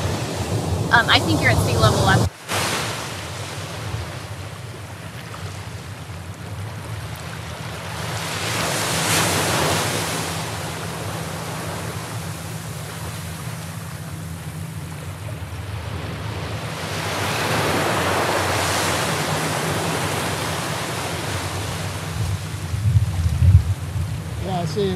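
Ocean surf on a beach: a steady wash of breaking waves that swells twice, about a third of the way in and again past the middle. The sound drops out briefly about two seconds in.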